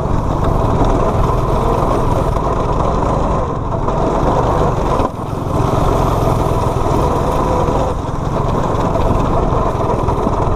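Small engines of homemade go-karts running hard at racing speed, with the engine note dipping briefly twice, the second time suddenly about five seconds in.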